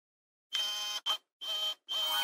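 Channel logo jingle: four electronic pitched tones in a row, starting about half a second in. The first is the longest and the second very short.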